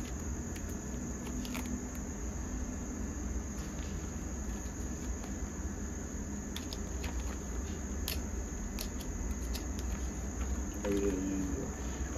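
A steady high-pitched insect chorus, with scattered soft clicks and rustles of plastic card-binder pages being handled and turned.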